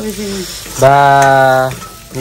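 Mutton masala frying and sizzling in an aluminium kadai as it is stirred with a spatula. Over it a voice gives a short 'ah', then holds one steady 'aah' for about a second, the loudest sound.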